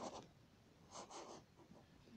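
Faint drawing on a tablet touchscreen: a sharp tap on the glass at the start, then a soft scratchy stroke about a second in as a line is drawn.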